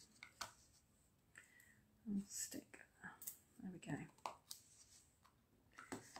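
Very quiet window: a few faint, low spoken words, with light clicks of paper and a ribbon spool being handled on a craft mat.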